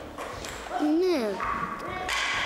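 A girl's voice saying a short "yes" (Ναι). A steady, higher-pitched sound of unclear source starts in the second half and carries on.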